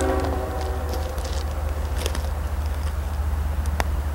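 Diesel freight locomotive's air horn sounding a chord that cuts off about half a second in, then a steady low rumble from the approaching train.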